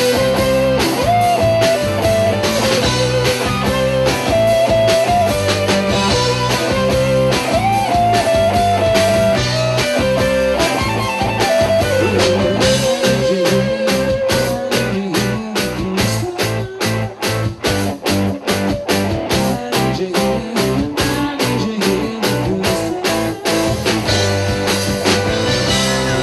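Live rock band playing an electric guitar solo: a lead line of long, held notes with upward bends over bass and drums, the drumming turning denser and more driving about two-thirds of the way through.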